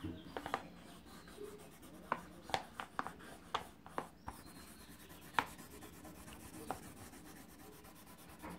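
Wax crayon rubbing on paper as a tree is coloured in, quiet, with light ticks scattered through.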